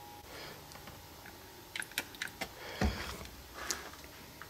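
Light handling noise: a few scattered short clicks and one dull thump a little before three seconds in, over low room noise.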